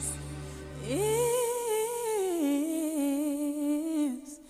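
A singer holds a long wordless note over Christmas pop backing music. The voice swoops up about a second in, wavers on the note, then steps down to a lower held note, while the low backing drops out early on.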